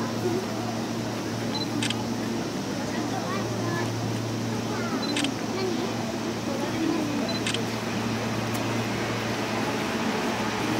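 Steady low hum from a stationary Seibu 2000-series electric train. Over it, camera focus-confirm beeps are each followed by a shutter click, three times, with a crowd talking quietly.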